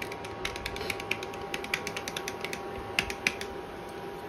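Foil spice packet crinkling in irregular sharp clicks, several a second, as powder is shaken out of it into a pot, the two loudest clicks about three seconds in. A steady hum runs underneath.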